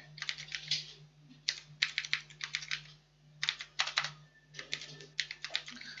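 Computer keyboard being typed on in short runs of keystrokes with brief pauses between them, over a low steady hum.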